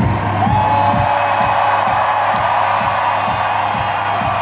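Electronic dance music playing over a large arena PA, with a steady kick-drum beat and a held note above it, while a crowd cheers and whoops.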